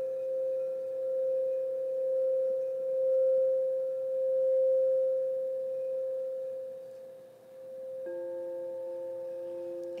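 Crystal singing bowls played with a mallet: one steady ringing tone that swells and ebbs slowly, fading away about seven seconds in. About a second later, a second, lower bowl tone begins and holds.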